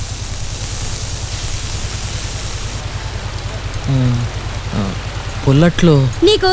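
A riverboat's engine running with a low, even chugging, under a watery hiss that eases off about three seconds in.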